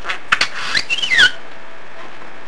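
A budgerigar talking in its high, chirpy mimic voice, saying the phrase 'Good thing we're here' in about the first second and a half, over a steady background hiss.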